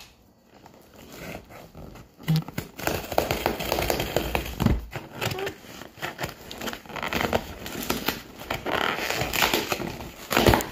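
Packing paper rustling and crinkling inside a cardboard box as it is handled and pulled aside, starting about two seconds in and going on unevenly with sharp crackles.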